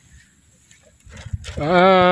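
A man's long, drawn-out 'aaah', starting about halfway through and sliding slowly down in pitch. Before it there is only a faint low rumble.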